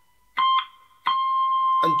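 Clean electric guitar picking two high notes near the top of the neck, the last notes of the lead part, ending on the 20th fret. The first note is short, about a third of a second in; the second comes about a second in and rings on.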